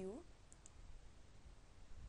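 Near silence with faint room hiss, and two small, faint clicks close together about half a second in.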